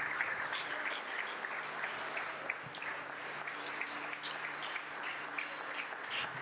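Congregation applauding, the clapping strongest at first and slowly thinning out, with a faint steady low hum beneath it.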